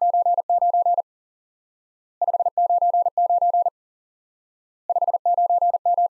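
The Morse code signal report '599' keyed three times at 40 words per minute as a single-pitch electronic tone. Each group opens with five quick dits (the 5) followed by two groups of long dahs ending in a dit (the 9s), with the groups repeating about every two and a half seconds.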